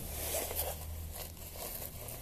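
Close, scratchy rustling and scraping of a padded jacket as gloved hands work at its front.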